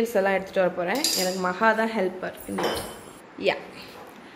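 Glass measuring jug clinking and knocking on a countertop under a voice. There is a short scraping swish a little past halfway and a single sharp knock near the end.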